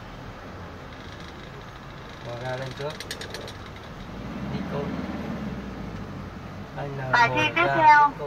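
Car engine running, heard from inside the cabin, with a short rattle of sharp clicks about three seconds in and the engine note swelling for a couple of seconds after. A voice starts near the end.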